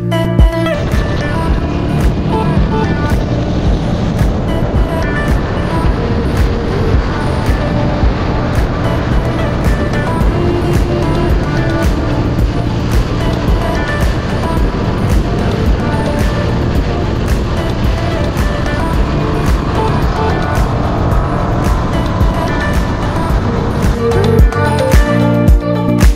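KTM Super Duke motorcycle riding at road speed, its engine and the wind rushing over an onboard camera mic, with background pop music mixed in underneath.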